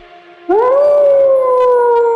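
Wolf howl sound effect: one long call that starts about half a second in, swoops up in pitch and then slowly sinks.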